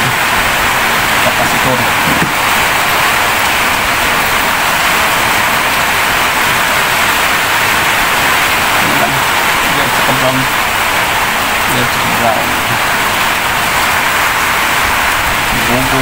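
Heavy rain falling steadily, a loud, unbroken hiss with no let-up.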